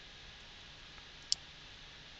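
A single short click of a computer keyboard key a little past halfway, over faint steady hiss.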